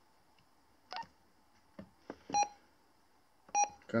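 Short electronic key beeps from PMR handheld radios as buttons are pressed and channels are switched. There are three brief beeps about a second and a half apart; the first is fainter, the last two are clear.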